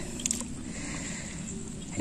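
Faint wet squelching and water sloshing as a handful of coarse moss is squeezed and dunked by hand in a plastic bucket of water.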